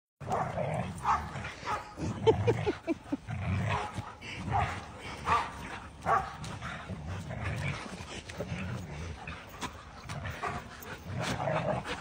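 Several dogs playing tug of war over one toy, growling and barking in repeated short bursts, with a quick run of high yips about two seconds in.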